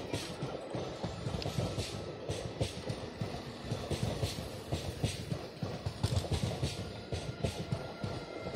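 Blue Indian Railways passenger coaches rolling past at close range: steel wheels clattering over the rail joints in a regular rhythm of roughly two clacks a second, over a steady low rumble.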